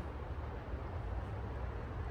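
Steady low background rumble with no distinct sound event.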